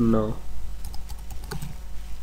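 Typing on a computer keyboard: a short run of separate quick keystrokes as a word is typed out.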